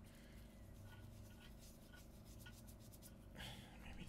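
Near silence with faint scraping and light ticks as potassium chlorate powder is added to a glass jar on a pocket scale, a little louder near the end.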